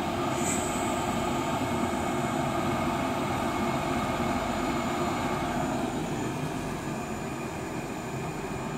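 Brötje gas boiler firing: the lit burner and its combustion blower make a steady, even roar. It is running evenly after the clogged boiler unit was replaced.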